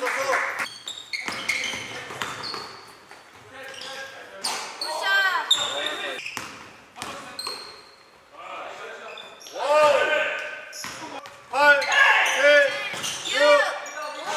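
Basketball game sounds in a large echoing gym: the ball bouncing on the hardwood court and sneakers squeaking in short rising-and-falling squeaks, busiest in the last few seconds.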